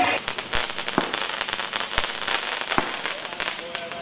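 Fireworks going off: dense crackling, with a few sharp bangs about half a second, two seconds and nearly three seconds in.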